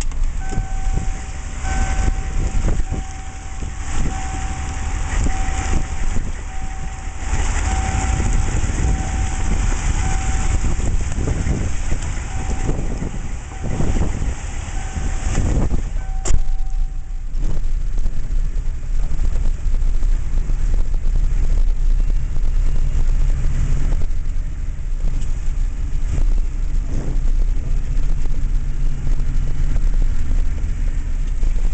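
Rushing floodwater heard from a vehicle: a steady low rumble with a constant wash of noise. An electronic beep repeats about once a second for the first half and stops just after a sharp click.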